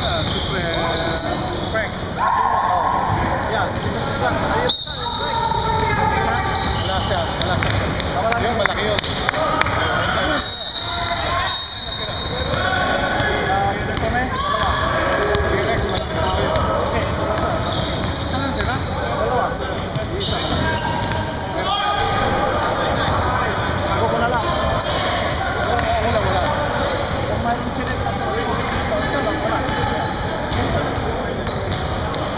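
Basketball bouncing and dribbling on a hardwood gym floor amid players' running feet, with indistinct voices echoing around the hall.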